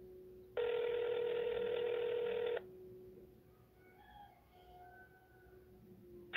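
North American ringback tone of an outgoing call on a Samsung Instinct SPH-M800, heard through the phone's speakerphone: one steady two-second ring starting about half a second in. It is the sign that the called line is ringing and has not been answered.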